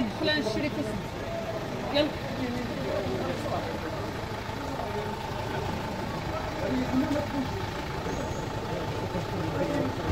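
A van's engine idling with a steady low rumble, with a faint steady whine alongside it, under men's voices talking in the street.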